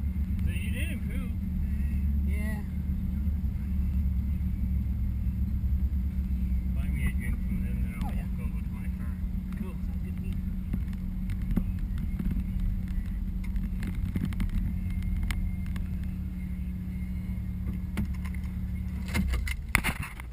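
Car engine heard from inside the cabin, driven hard through an autocross course as a steady deep drone, which drops away near the end as the car slows.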